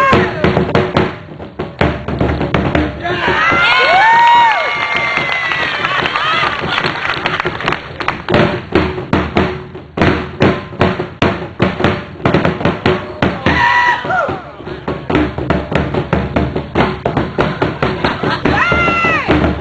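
Tongan drums beaten with sticks in fast runs of strikes, the two drummers taking turns. Loud calls that rise and fall in pitch ring out over the drumming about three to five seconds in and again briefly near fourteen seconds.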